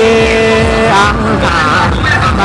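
Mường folk singing (hát Mường): a long held note, then a wavering vocal line from about a second and a half in, over a steady low beat.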